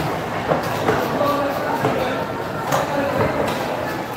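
Indistinct voices of a busy market hall with a handful of sharp, irregular knocks: a long knife blade meeting a wooden chopping block as fresh tuna is sliced.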